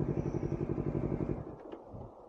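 Honda CBR250RR motorcycle engine idling with an even beat, then cutting off about one and a half seconds in as it is switched off.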